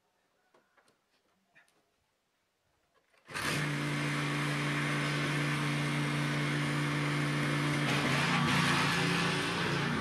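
A few faint clicks, then about a third of the way in the small engine of a walk-behind tractor (tiller) starts abruptly and runs steadily. Near the end its note shifts as the machine is put to work and moves off along the trench.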